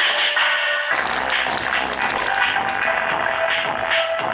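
Electronic dance music played from a phone through a homemade 24 V amplifier built on a 2SA1943 power transistor with a BD139 driver, driving a large woofer. A bass beat comes in about a second in.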